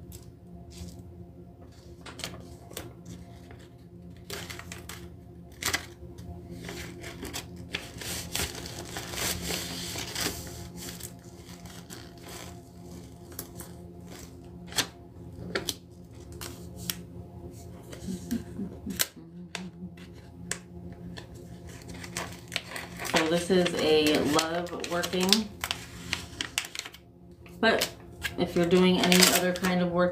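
Scattered small clicks and taps of a glass seven-day candle jar and a paper label being handled on a table, with paper rustling about a third of the way in, over a steady low hum. A voice murmurs near the end.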